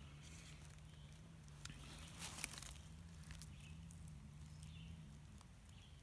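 Near silence: a few faint clicks and rustles of hands moving in dry leaf litter, over a low steady hum that stops about five seconds in.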